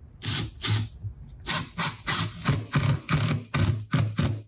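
Milwaukee cordless impact driver driving a Torx T25 screw into a wooden board, run in about ten short bursts as the screw goes in.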